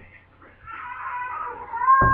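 One long, high-pitched cry starting about half a second in, wavering and then rising in pitch near its end, with a thump at the very end.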